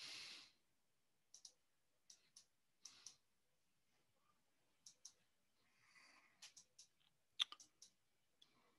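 Near silence broken by faint, scattered clicks in pairs and small clusters, picked up by an open microphone on a video call. There is a soft exhaled breath in the first half second, and the clicks come thickest near the end.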